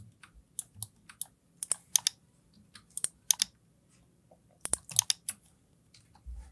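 Irregular sharp clicks of a computer mouse and keyboard, many in quick pairs, with a tighter run of clicks about five seconds in.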